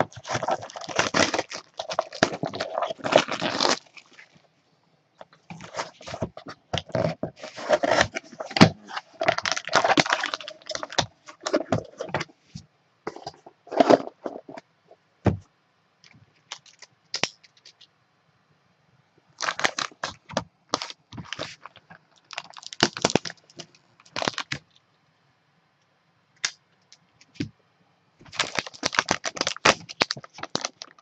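Product packaging being opened and handled by hand: plastic wrap crinkling, with scraping and cracking in bursts, broken by quiet gaps of a few seconds.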